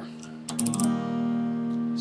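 Guitar in open D tuning with a capo on the first fret, its open strings strummed about half a second in as a D-shape chord that sounds as E-flat major, then left ringing.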